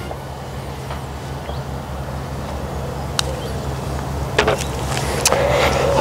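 A putter strikes a golf ball with one sharp click about three seconds in, followed about a second later by fainter knocks as the short putt drops into the cup. A steady low motor hum runs underneath.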